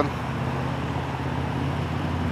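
Touring motorcycle's engine running steadily at cruising speed, a low even hum with road and wind noise.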